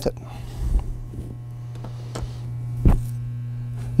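Steady low electrical mains hum, with a few faint clicks and one sharper knock just before three seconds in, from the small metal bracket and microswitch being lifted out of the jukebox mechanism.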